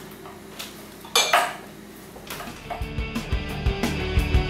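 Kitchen work sounds: a few short knocks and clinks of knives cutting broccoli on a wooden board. About two and a half seconds in, background music with a steady beat comes in and takes over.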